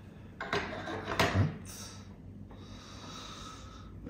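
A person's breath: a short noisy exhale about half a second in, lasting about a second, with a sharp click near its end.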